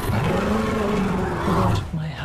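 A dragon's roar, Meleys in the series' sound design: one long call that rises and then sinks in pitch, breaking off a little before the end.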